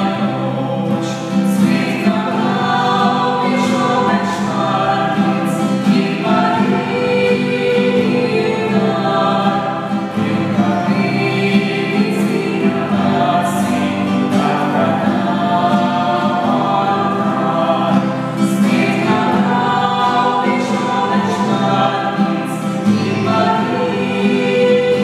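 Several voices singing a slow Slovenian Marian song in unison, accompanied by acoustic guitar, with the church's reverberation.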